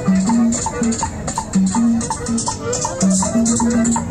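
Music with a steady rhythm: a shaker keeping time over a repeating bass line and short melodic notes.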